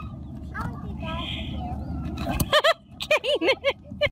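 Low rumble of wind buffeting a phone microphone, then a person laughing and exclaiming during the last second and a half.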